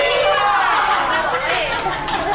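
Several people talking and calling out at once, a busy din of overlapping voices in a crowded restaurant dining room.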